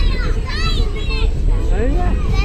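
High-pitched children's voices calling and chattering, over a steady low rumble of wind on the microphone.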